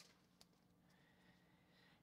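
Near silence: room tone, with a couple of very faint ticks near the start.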